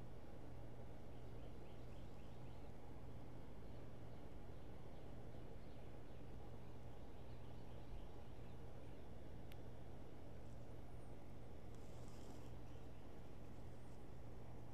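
Quiet outdoor yard ambience: a steady low hum with faint bird chirps. There is a single sharp tick about halfway through and a brief high hiss near the end.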